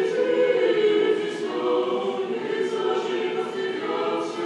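Russian Orthodox church choir singing unaccompanied liturgical chant in long held notes.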